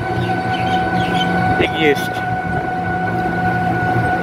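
Ride noise from an open rickshaw-type vehicle: a low rumble under a steady high-pitched whine, with a brief voice about two seconds in.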